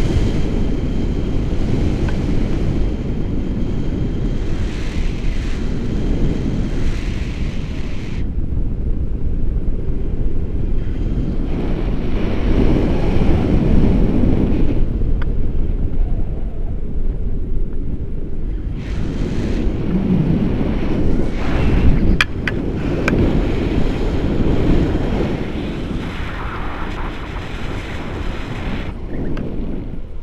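Wind buffeting an action camera's microphone on a selfie stick during a tandem paraglider flight: a continuous low rumble that swells and eases in gusts. A few sharp clicks come about two-thirds of the way through.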